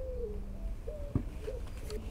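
A few faint, short, low cooing notes from a bird, with one sharp click just after a second in.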